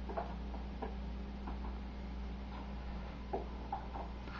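Irregular light clicks and taps of plastic food containers and lids being handled over a stovetop pot, about seven in a few seconds, over a steady low hum.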